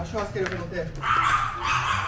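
A dog whining with short high yips in the first second, followed by about a second of breathy hiss.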